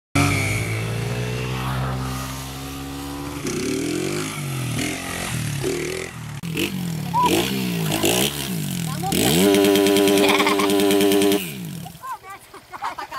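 160 cc single-cylinder motorcycle engine revving up and down repeatedly as the bike is ridden on its back wheel. Near the end it holds a high rev for about two seconds, then drops away.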